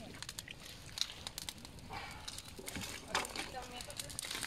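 A small fire of dry grass tinder and thin wood splinters burning, with irregular sharp crackles and pops.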